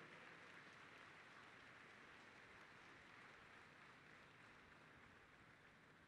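Faint audience applause, a soft even patter that slowly dies away.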